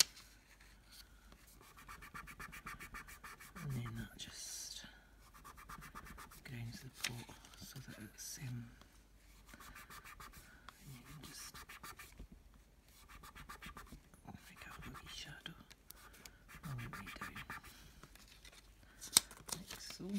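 Tissue rubbed back and forth on card stock, blending ink onto the paper, in repeated spells of scratchy rubbing a second or two long.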